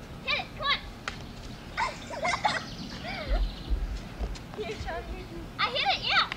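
Girls' high-pitched voices giving short calls and squeals with no clear words, in bursts scattered through the rally. There are a couple of short, sharp clicks, one about a second in and one past the middle.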